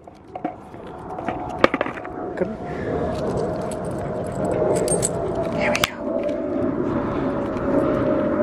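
Skateboard wheels rolling over rough asphalt with a thin steady whine, the rumble growing louder from about three seconds in, with a few sharp clicks and knocks from the board.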